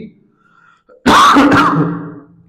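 A man clears his throat once, about a second in: a single loud, rough burst under a second long.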